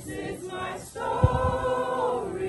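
A group of voices singing a hymn together, holding one long note through the second half, with a brief low thump near the middle.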